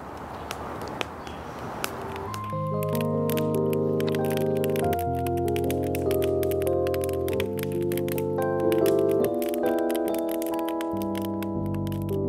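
A couple of seconds of faint outdoor background hiss, then slow closing music on a keyboard from about two and a half seconds in: sustained chords held over low bass notes, changing every second or two.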